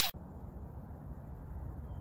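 Steady low outdoor background rumble picked up by a phone microphone, with no distinct events. The tail of a whoosh sound effect cuts off at the very start.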